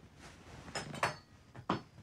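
Bedding and pillows rustling as someone shifts across a bed, then small hard objects clicking on a bedside table, once about a second in and again near the end.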